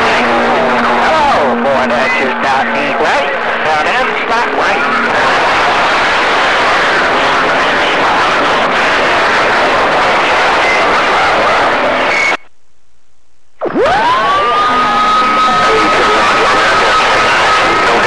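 CB radio receiver hissing loudly with static and garbled, wavering voices of distant stations. About twelve seconds in it cuts out for a second, then a whistle glides up and holds a steady pitch over the static.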